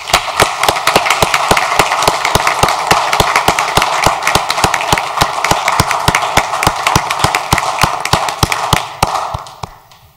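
Audience applauding in a council chamber: a dense run of hand claps with some louder, sharper claps standing out, dying away near the end.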